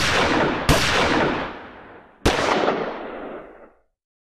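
Three gunshots, the second less than a second after the first and the third about a second and a half later, each followed by a long echoing tail.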